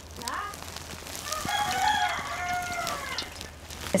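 A rooster crowing once: a long, arching call of about two seconds that begins about a second in.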